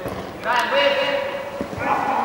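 A man's long, drawn-out shout across an indoor football pitch, with a dull thud about one and a half seconds in.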